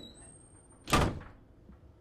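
A door shutting: one sharp bang about a second in that dies away quickly.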